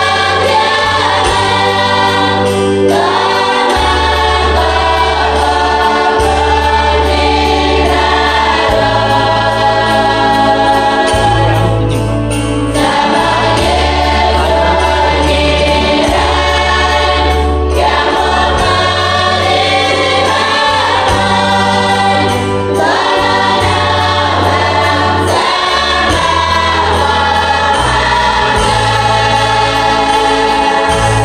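A large women's choir singing a hymn together, over a sustained low bass accompaniment whose notes change every couple of seconds.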